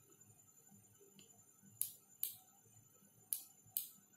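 Four faint, short clicks in two pairs, the clicks of each pair about half a second apart.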